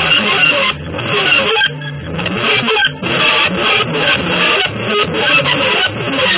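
Avant-garde, free-jazz-style electric guitar music in a dense, noisy passage that thins briefly a few times, most clearly about two seconds in.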